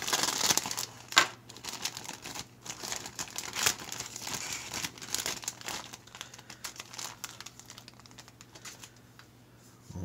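Clear plastic bag being torn open by hand, crinkling and tearing, with sharp crackles about a second in and again near four seconds; the rustling dies down in the second half.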